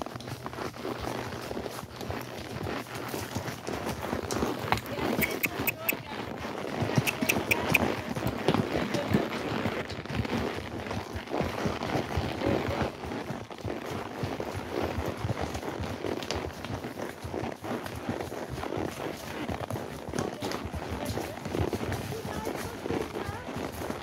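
Horses walking along a dirt trail covered in dry fallen leaves: a steady, uneven patter of hoofbeats and leaf crunching.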